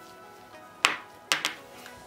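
Soft background music with three sharp taps in the second half, one on its own and then two close together, as a jar of acrylic nail powder is handled in gloved hands.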